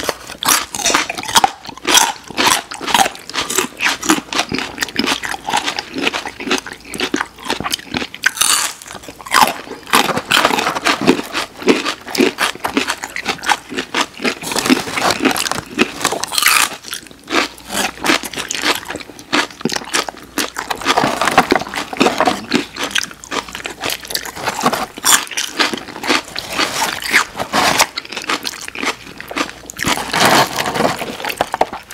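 Close-miked eating: repeated crisp crunching bites and chewing of raw celery and carrot sticks, full of quick crackles.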